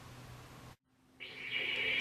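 Faint room tone, cut to dead silence for about half a second, then a steady high hiss with a low hum fading in and growing louder.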